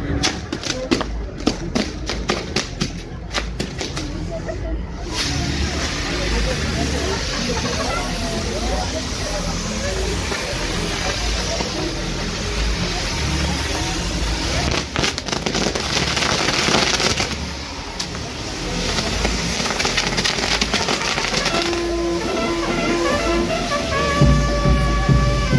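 Fireworks going off: a rapid run of sharp firecracker cracks for the first few seconds, then a steady loud hiss of burning pyrotechnics with more cracks about two-thirds of the way through. Music comes in near the end.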